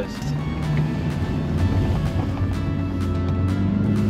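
Background music over a Toyota Hilux Rogue's 2.8-litre four-cylinder turbo-diesel engine working hard under load, a steady low drone that grows slightly louder as the ute pushes up a steep soft-sand dune.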